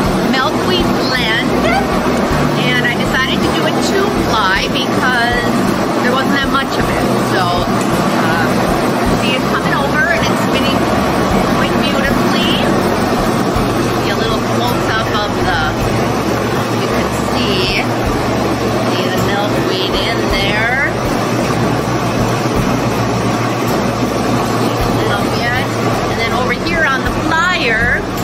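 Fiber-mill spinning frame running steadily with a loud mechanical hum, drawing wool-and-milkweed roving up into its spindles.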